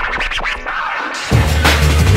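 Drum and bass DJ mix in which the bass and drums drop out and a vinyl record is scratched on a turntable in quick choppy strokes; the full beat and bassline drop back in just over a second later.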